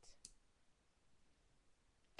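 Near silence: room tone, with a couple of faint short clicks in the first quarter second.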